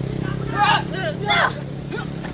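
Two short, loud shouted cries without words, about half a second and a second and a half in, over the steady hum of an idling motor vehicle engine.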